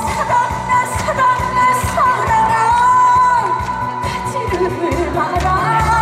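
A woman singing a Korean trot song live into a microphone over an accompaniment with a steady beat. Her held notes carry a wide vibrato, and one long note about two seconds in slides down at its end.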